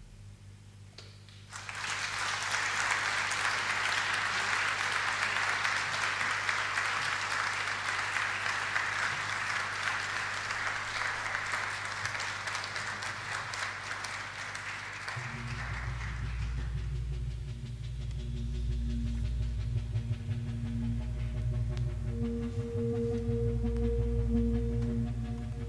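Audience applauding at the end of a song. The clapping starts about a second and a half in and dies away about two thirds of the way through. As it fades, a low, steady drone of held musical tones begins.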